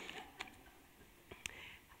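A quiet pause with faint breathy voice sounds, like soft breathing or a whispered aside, and two small clicks, about half a second and a second and a half in.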